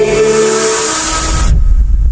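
A man's karaoke singing through a microphone fades out under a swelling, rushing whoosh with a deep rumble beneath it; the whoosh cuts off suddenly about a second and a half in while the rumble carries on.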